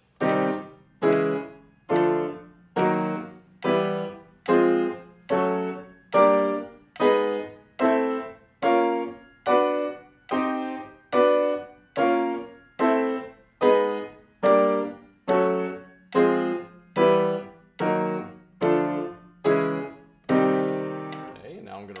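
Grand piano playing minor triads as blocked chords with both hands, about 25 chords struck evenly at roughly 72 a minute, stepping up chromatically, each one ringing and then released just before the next.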